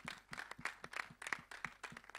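Light, scattered hand clapping by a few people: separate, uneven claps, about seven or eight a second, faint rather than a full round of applause.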